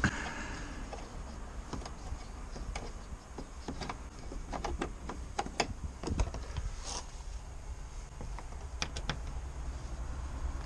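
Irregular light clicks and taps of plastic door trim being handled and worked by hand at the door-handle surround of a Mercedes Sprinter door card.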